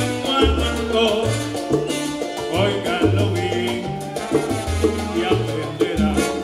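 A live salsa orchestra plays a guaguancó-style salsa number: a moving bass line under percussion and trombones, with a male lead voice singing.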